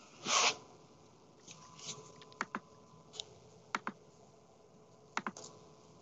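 Scattered sharp clicks from a computer mouse and keyboard, about seven in all, several coming in quick pairs, after a short noisy rush near the start.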